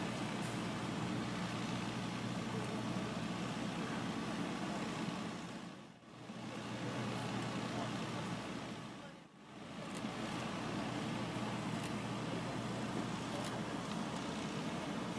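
Steady outdoor background noise, a low rumble with hiss across the scene, that fades out briefly twice near the middle.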